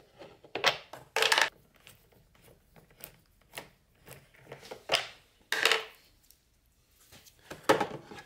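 Scattered light clicks and clinks, a few at a time with pauses between, as a hand tool turns out small Torx screws from a snowmobile's plastic dash console.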